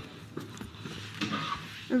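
Faint, indistinct speech over low background noise, with a few light clicks.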